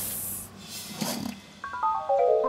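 Cartoon snake hissing: a long hiss fades out about half a second in, then a second, shorter hissing burst follows. Near the end a quick descending run of mallet notes begins.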